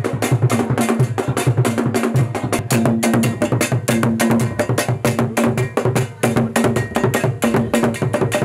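Percussion-led music: drums under a fast, steady clacking beat like wood blocks or a bell, with a repeating pitched note over it.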